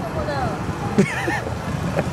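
Busy street background with car traffic running underneath. Faint chatter sits on top of it, and a brief high-pitched voice comes in about a second in.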